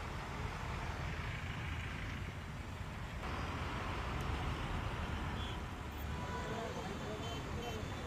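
Steady low rumble of road traffic stuck in a jam: heavy vehicles and cars idling and creeping, with no horns or sharp sounds standing out.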